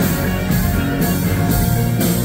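Live rock band playing an instrumental passage with no vocals: electric guitars over bass and drums, on a steady beat about two accents a second.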